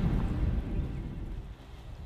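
Low rumble of wind buffeting the microphone, dying down after about a second.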